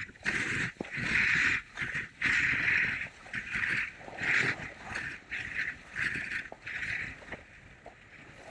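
Völkl skis carving turns on packed snow, a scraping hiss from the edges with each turn. The turns come quicker after about four seconds, and the scraping dies down near the end.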